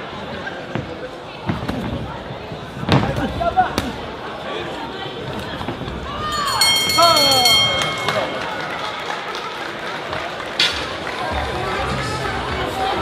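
Boxing ring bell ringing rapidly for about a second, about six and a half seconds in, to end the round, over a shouting crowd in a hall. A couple of sharp knocks come about three seconds in.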